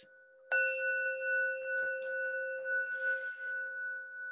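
Metal singing bowl struck once with a mallet about half a second in, then ringing on with one low tone and a few higher ones. The low tone fades first while a middle tone keeps sounding.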